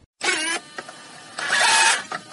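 A radio call-in caller's telephone line: one word at the start, then hissing line noise with faint garbled traces of voice. The noise swells louder near the end, as if the connection is breaking up.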